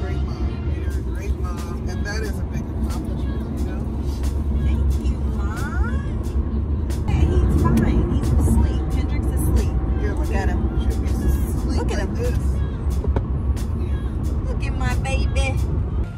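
Steady low road and engine rumble inside a Mercedes-Benz cabin at freeway speed, with music and voices over it.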